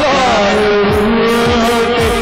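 Live gospel song: a male singer holds one long note, sliding into it at the start, over band accompaniment with a steady beat of deep, falling-pitch drum thumps about two a second.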